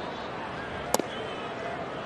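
Ballpark crowd murmur, with one sharp pop about a second in: a pitched fastball smacking into the catcher's mitt.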